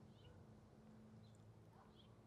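Near silence: faint background tone with a low steady hum.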